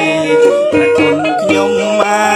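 Khmer traditional wedding music: a singer's ornamented melody that glides and bends between notes, over traditional instruments with light drum strokes.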